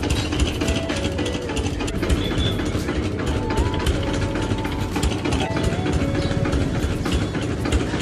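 An engine running steadily at idle with a dense rattling texture, under a faint melody of background music.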